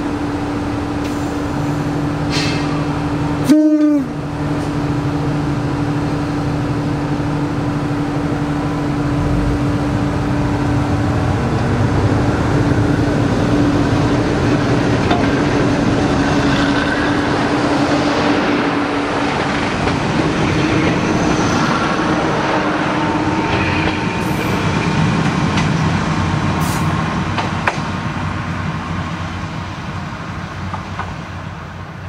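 Ex-JNR KiHa 28 and KiHa 52 diesel railcars idling with a steady engine drone, then one short typhon horn blast about three and a half seconds in. The DMH17 diesel engines then throttle up as the two-car train pulls away and passes, and the sound fades near the end.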